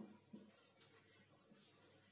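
Faint marker strokes on a whiteboard: a few soft, short scratches in near silence.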